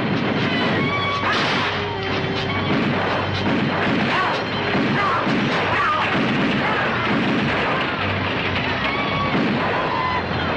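Western film battle soundtrack: music mixed with gunfire and crashes, and shouting among the attacking riders.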